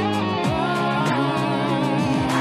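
Electric guitar playing in a song with a band backing and a steady beat, holding long notes and sliding between pitches.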